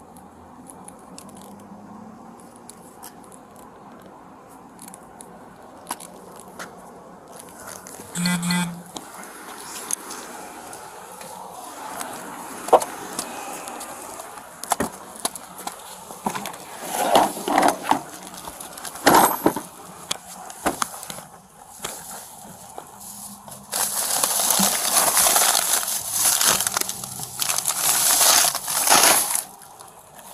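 Plastic bags and loose items being rummaged through by hand during a car search: crinkling and rustling with scattered clicks and knocks, loudest in a long stretch of crinkling near the end.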